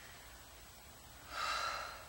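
A woman's sharp exhale, one breathy puff of about half a second near the end, forced out with the effort of a dumbbell curl and overhead press.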